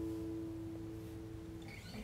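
The last chord of an acoustic guitar ringing on and slowly dying away, with a few held notes fading out about three-quarters of the way through.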